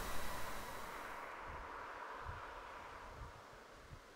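Faint outdoor background noise, a soft steady hiss that gradually fades out to near silence near the end.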